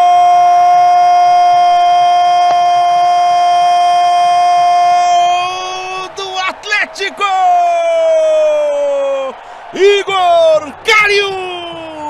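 Brazilian TV football commentator's goal cry: one long, high 'goooool' held steady for about five seconds, then a few shorter shouts that fall in pitch.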